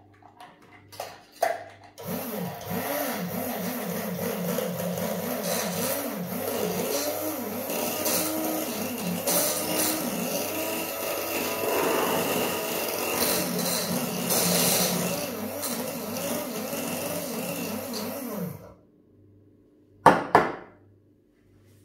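Spindle drink mixer (frappé mixer) running, whipping espresso with ice in a stainless steel cup. It starts suddenly about two seconds in, its pitch wavers up and down, and it cuts off near the end. A few knocks from handling the cup come just before it starts.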